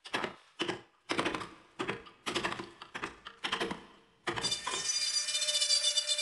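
Hammer striking a carving chisel into a bamboo root clamped in a vise: a series of sharp blows, roughly two a second. About four seconds in, a handheld rotary engraving tool takes over with a steady high whine.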